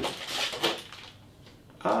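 Plastic bag and cardboard packaging rustling and crinkling as a bagged cable is pulled out of a box, in a few short bursts during the first second.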